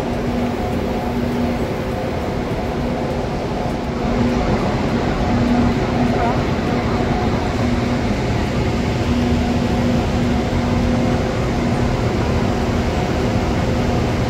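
Steady hum and rumble of a stationary KTX-Sancheon high-speed trainset at the platform, with a low hum tone that comes and goes; the sound grows a little louder about four seconds in.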